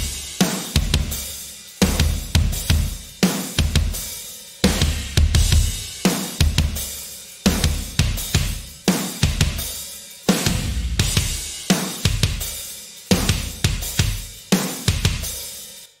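A drum kit track playing back with a sampled kick drum from the Kick Arsenal brick room library triggered over it. The kick has heavy low end and comes in quick double-kick runs, with snare and cymbals over them and a strong accent about every second and a half.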